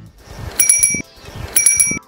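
Bicycle-bell chime played through a car's audio speaker as a warning that a cyclist is approaching: two short trilling rings about a second apart.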